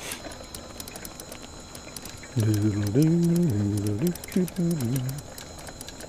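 A man's voice close to the microphone, starting a little over two seconds in and lasting about three seconds, held on steady pitches in drawn-out wordless sounds rather than clear words; before and after it there is only low background noise.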